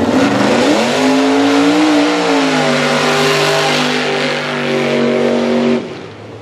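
Mud-racing pickup truck's engine revving at full throttle on a run down a dirt drag pit. The engine note climbs in the first second, then holds high and steady, with a hiss of tyres throwing dirt above it. The sound cuts off suddenly just before the end.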